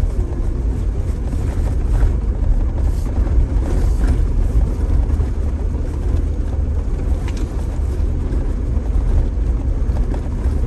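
Jeep Gladiator driving slowly over a gravel dirt trail, heard from inside the cab: a steady low rumble of engine and tyres on gravel, with a few faint knocks now and then.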